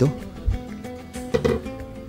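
Background music with plucked acoustic guitar, steady under the scene, and a brief low thump about half a second in.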